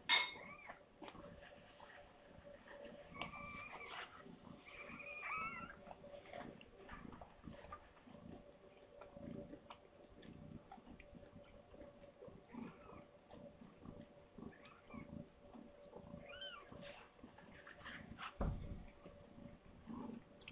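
Faint, high mews from newborn kittens: a few short calls that rise and fall, over soft rustles in the nest. A dull thump near the end.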